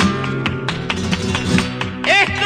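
Flamenco guitar playing an instrumental passage of quick strummed chords and picked notes.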